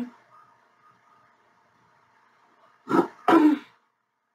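A woman clearing her throat in two short loud bursts about three seconds in.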